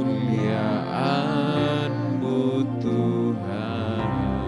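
Slow, quiet worship music: a Yamaha electronic keyboard playing long held chords, with a voice singing softly over it.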